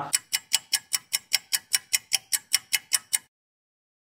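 Edited-in ticking sound effect: fast, even ticks about five a second, stopping abruptly a little over three seconds in.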